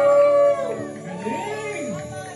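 A singer's long held note at the end of a song, which stops about half a second in, followed by a voice sliding up in pitch and back down.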